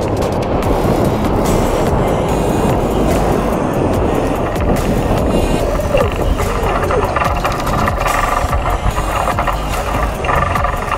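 Wind rushing over the microphone and road rumble from a boat being towed on its trailer behind a pickup, under electronic background music that comes forward in the second half as the rig slows.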